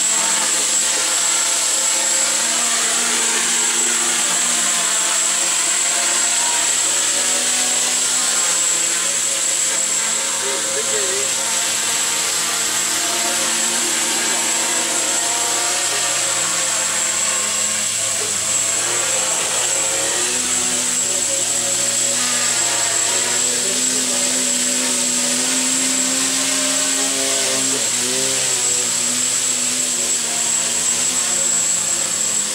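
Small quadcopter's electric motors and propellers running steadily in flight, with a thin high whine held on top.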